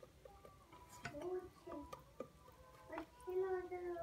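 A child's voice in the background, a few short high-pitched phrases, with faint clicks of a wire whisk against an enamel pot between them.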